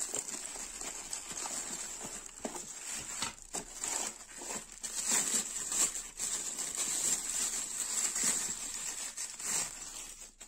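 Clear plastic packaging bags crinkling and rustling in the hands as a machine part is unwrapped and pulled out of a cardboard box, a continuous crackle of many small sharp crinkles.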